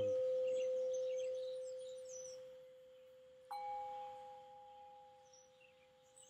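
Metal singing bowls ringing. A low tone from a bowl struck just before fades slowly throughout. About three and a half seconds in, another mallet strike brings in a higher ringing tone that dies away.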